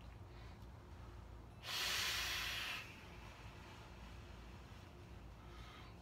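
A forceful exhale of a big vape cloud blown at the microphone: one hiss of breath about two seconds in, lasting about a second.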